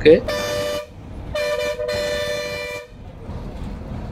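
Bus's two-tone air horn sounding twice, a short blast and then a longer one of about a second and a half, as the bus approaches a blind hairpin bend on a hill road. Engine and road rumble runs underneath.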